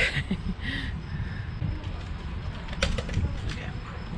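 Wind rumbling on the microphone, with faint voices in the first second and a few sharp clicks about three seconds in.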